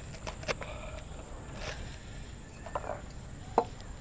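A few light, separate taps and knocks from handling monstera cuttings and a small plant pot, the sharpest knock about three and a half seconds in.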